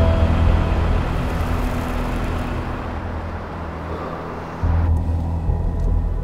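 Deep rumble of a car engine with street hiss. About five seconds in it turns to a heavier, muffled engine hum heard from inside the car's cabin, with the higher sounds cut off.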